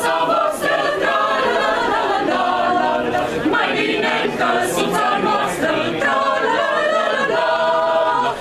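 Mixed choir of women's and men's voices singing unaccompanied, with long held notes that move from chord to chord.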